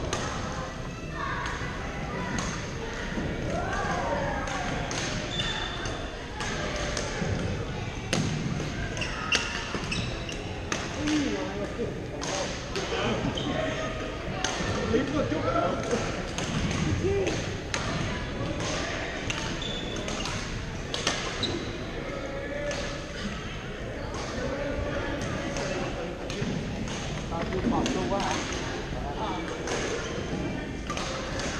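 Badminton games in a large, echoing gym hall: sharp hits of rackets on shuttlecocks scattered throughout, over a steady background of players' voices.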